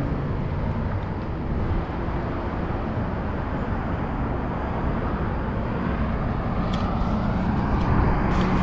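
Steady outdoor street ambience: an even rumble and hiss of road traffic and moving air, with a few faint clicks near the end.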